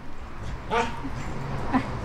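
A couple of short animal cries, the first and loudest a little under a second in.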